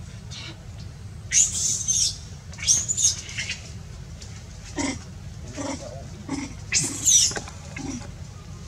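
Macaque monkeys giving short, high-pitched squeaky calls, three louder arching squeals (about a second and a half in, around three seconds, and about seven seconds in) with softer, shorter calls between.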